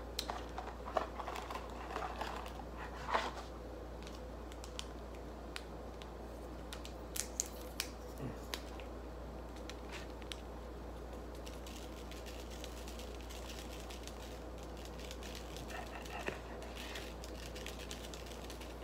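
Faint scattered clicks and crinkles of a small Tajín seasoning packet being handled and snipped open with scissors, with a few sharper clicks along the way, over a steady low hum.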